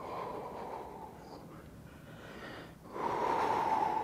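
A man's breathing during a slow mobility exercise: a long, fainter breath at first, then a louder, longer one about three seconds in.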